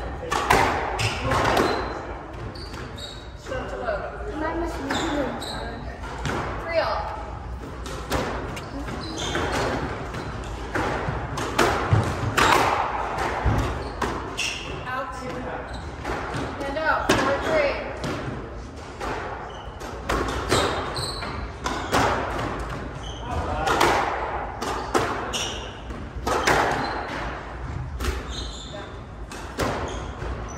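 Squash ball struck by rackets and hitting the walls of a glass-walled court: sharp impacts come at irregular intervals and ring in a large hall, with low voices in the background.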